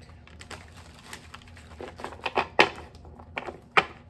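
Deck of tarot cards being shuffled by hand, giving a run of irregular sharp clicks and slaps of card on card, the loudest about two and a half seconds in.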